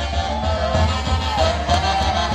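Live Andean folk band playing santiago music: a melody that slides between notes over low drum beats.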